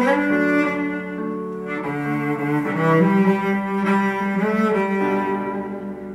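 Cello bowed in a slow melody of long held notes, moving to a new note every second or so.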